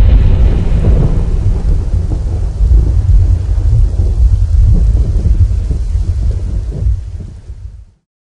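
Thunderstorm: deep rolling thunder over steady rain, fading out just before the end.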